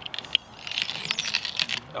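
Fiskars lopping shears cutting through a turkey's leg joint: a sharp crack about a third of a second in, then about a second of crackling and crunching as the blades work through the joint.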